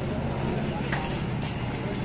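Busy street ambience: a steady low engine hum from traffic, with indistinct voices of passers-by.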